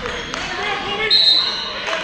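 A referee's whistle blown once about a second in, a single steady shrill tone lasting most of a second, over spectators' voices in a large gym.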